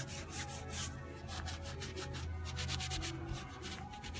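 Folded gauze rubbing over a painted picture frame as gel stain is wiped on and back, in a run of short, quick strokes.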